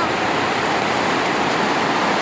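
A steady, even rushing noise that does not change.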